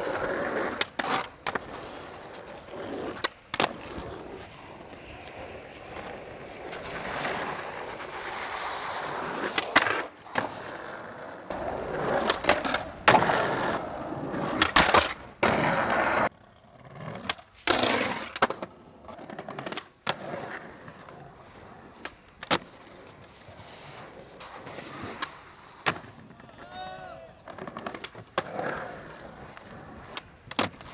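Skateboard urethane wheels rolling over rough pavement, broken by sharp wooden clacks of the tail popping and the board and wheels slapping down on landings, many times over.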